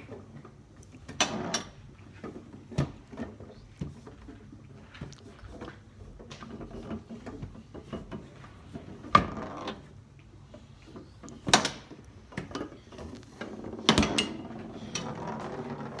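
Foosball table in play: irregular sharp knocks and clacks of the ball being struck by the rod-mounted players and hitting the table's sides, with the rods sliding and rattling. The loudest knock comes about nine seconds in.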